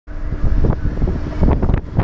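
Wind buffeting the microphone in irregular gusts over the steady running of a lobster boat's engine under way.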